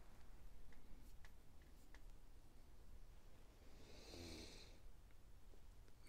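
Near silence with a few faint clicks, then a single breathy puff about four seconds in from a man smoking a briar tobacco pipe.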